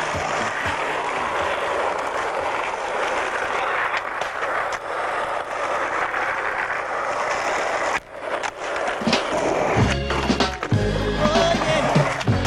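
Skateboard wheels rolling on rough asphalt, with a few clicks of the board. About ten seconds in, music with a heavy bass comes in over the footage.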